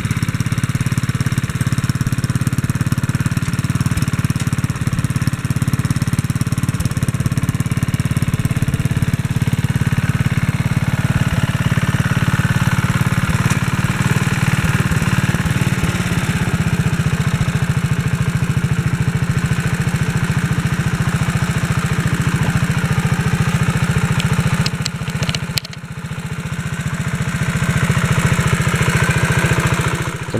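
Kohler K91 single-cylinder engine of a 1957 Wheel Horse RJ-35 garden tractor running steadily while the tractor drives. The level dips briefly about 25 seconds in.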